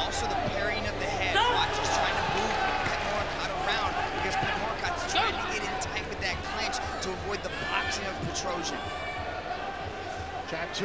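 Ringside sound of a kickboxing bout: shouting voices from the crowd and corners over a steady hubbub, with repeated sharp thuds of strikes landing.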